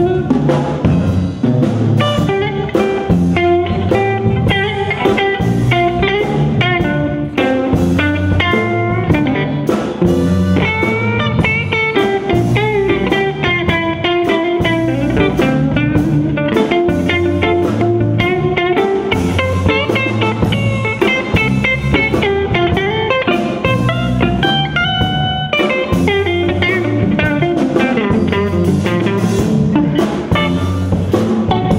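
Live blues band playing: an electric guitar plays a lead solo of quick note runs over an electric bass line and drum kit.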